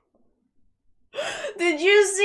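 Near silence for about a second, then a woman gasps and breaks into a drawn-out, held vocal exclamation.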